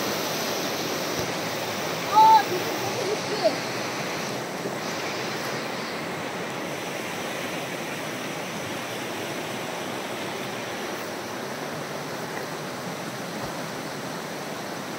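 Rocky river running fast, a steady rush of water. A short voice sound about two seconds in.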